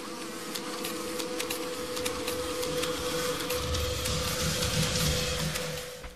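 Intro music: a steady held tone with ticking percussion, joined about halfway through by a low pulsing beat, then fading out at the end.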